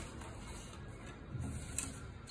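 Thin rattan cane strand scraping and rustling as it is threaded and pulled between the spokes of a cane frame, with a few light clicks, one sharper near the end.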